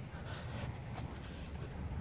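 Quiet outdoor background: a steady low rumble, with a couple of faint high chirps near the end.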